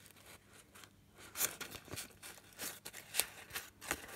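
Pages of a small booklet made of dried tea bags rustling and crackling as they are handled and turned by hand, in a run of short, crisp rustles starting about a second in.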